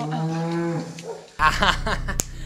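A cow mooing once, a steady low call lasting just under a second. About a second and a half in, a man laughs loudly.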